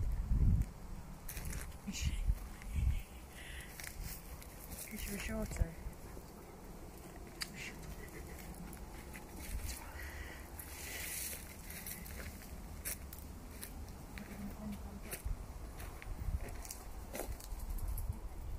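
Footsteps on a woodland floor of leaf litter and twigs, with scattered sharp crackles and the low rumble of a hand-held phone microphone being moved about, heaviest in the first few seconds.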